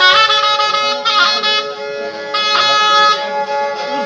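Zurna playing a loud melody over a steady held drone note.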